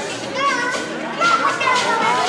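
Crowd of young children shouting and squealing excitedly, many high voices overlapping in a large hall.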